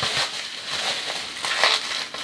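Bubble wrap crinkling and crackling as hands squeeze and handle it around a boom arm, a continuous rustle of small crackles.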